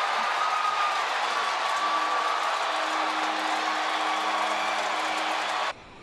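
Ballpark crowd cheering steadily after a game-tying home run, with a few faint held tones underneath. The cheering cuts off abruptly near the end.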